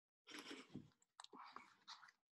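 Near silence, with a few faint soft rustles and small clicks from a hardcover picture book being handled and turned.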